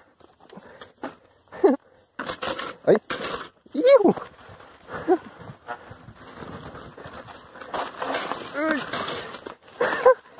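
Lowered bicycle knocking against rocks on a stony trail, then its tyres rolling and the bike rattling along a dirt path, with a man's exclamation and laughter.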